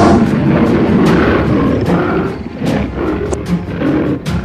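A tiger's roar, a dubbed sound effect, loudest in the first two seconds and fading. It plays over dramatic film-score music with sharp drum hits.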